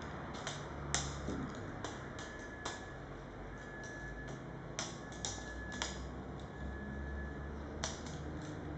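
Kinetic sculpture of hanging motorized units swinging thin rods: irregular sharp clicks and ticks, a few a second, over a low motor hum that swells and fades. A faint thin high whine comes and goes.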